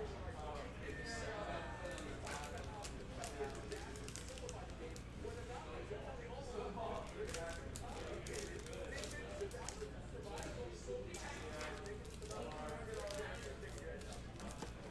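Faint voices in the background, with light clicks and rustles from trading cards in hard plastic holders and card packs being handled on a table.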